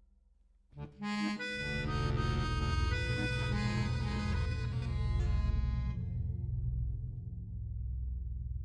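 Accordion playing after a quiet start: a loud, dense sustained chord enters about a second in. Its upper notes die away around six seconds, while the low bass notes keep sounding.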